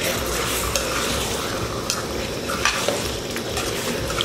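Fish pieces in masala gravy sizzling in a steel pan while being stirred with a ladle, the ladle clicking against the pan a few times.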